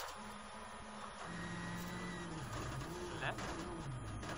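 Rally car engine and gravel road noise heard from inside the cabin as the car brakes hard on a gravel stage. From about a second in, the engine pitch falls and jumps back up several times, as with downshifts while slowing.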